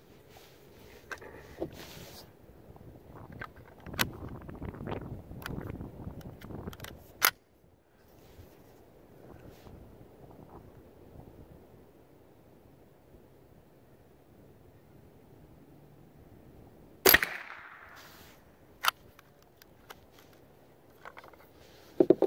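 Ruger 10/22 rifle firing a single Winchester M-22 .22 LR round about seventeen seconds in, a sharp crack with a short tail of echo. Before it, clicks and rustling as the rifle is handled and shouldered.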